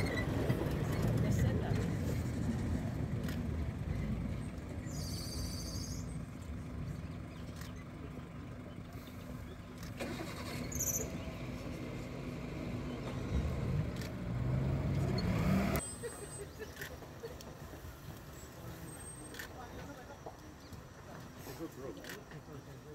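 Safari vehicle's engine running with a low rumble, which stops abruptly about sixteen seconds in, leaving a quieter background.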